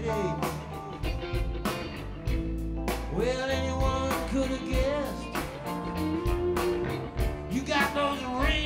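Live country-rock band playing: electric guitar, bass and drum kit with a steady beat, and a man singing with the band.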